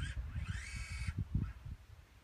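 Leica TS12 robotic total station's servo drive whining once for under a second as the instrument turns during a power search for the prism, over a low rumble.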